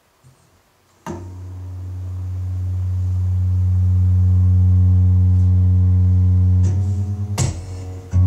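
Acoustic guitar, fitted with a capo, opening a song: after a moment of quiet, a low chord rings out about a second in and swells as it sustains, then the notes change and a strum comes near the end.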